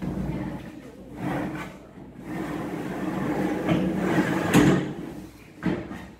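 Metal-framed pull-out bed with slats being slid out from under a sofa: a continuous rolling, scraping rumble that ends in a loud clunk about four and a half seconds in, followed by a short knock near the end.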